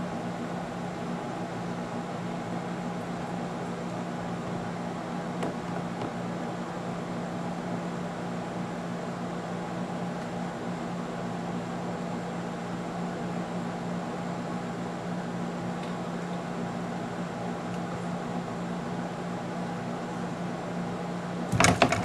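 Steady machine hum with a constant low drone and even hiss, like room ventilation or other running equipment, unchanged throughout; a short sudden noise breaks in just before the end.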